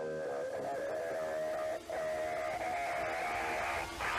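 Background music led by held guitar notes, with a brief break about two seconds in.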